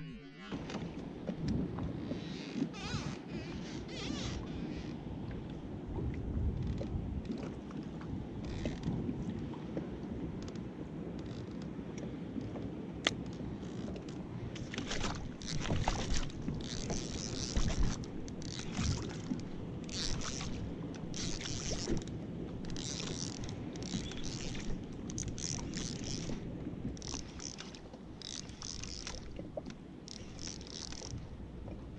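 Wind on the microphone and water noise around a fishing kayak. Over the second half, a run of short hissing splashes comes about once a second as a hooked fish thrashes at the surface.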